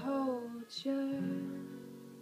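A young woman sings the end of a phrase in a falling line over a steel-string acoustic guitar. The voice drops out about a second in, and the strummed guitar chord rings on and slowly fades.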